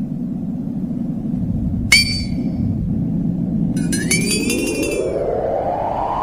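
Underwater sound design from a film soundtrack: a steady low rumble with a sharp metallic ping about two seconds in and a longer ringing chime about four seconds in, then a rising swell climbing in pitch through the second half.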